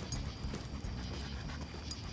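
German shepherd panting as it walks at heel, with soft footsteps.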